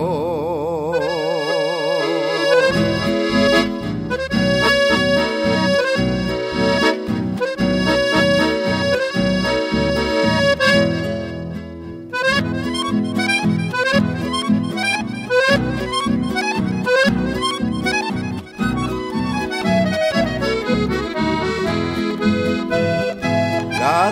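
Instrumental break in a folk song: an accordion plays the melody over a steady plucked guitar and bass accompaniment. A sung note with vibrato is held over the first couple of seconds.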